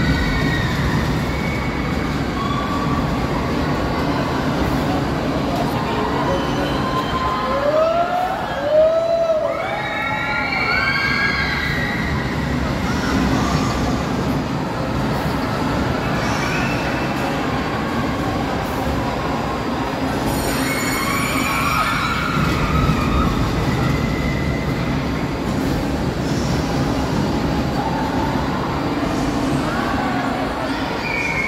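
Spinning roller coaster cars running on a steel track, a steady loud rumble. A run of high squeals that rise and fall breaks out about eight to eleven seconds in, with a few more around two-thirds of the way through.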